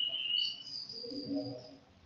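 A pause in speech holding faint, steady high-pitched tones: one fades out about half a second in, and a higher one carries on to about the middle. Very faint low sound follows, and it goes silent just before the end.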